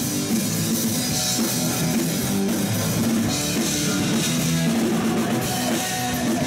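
Live rock band playing at a steady loud level: distorted electric guitars over a pounding drum kit.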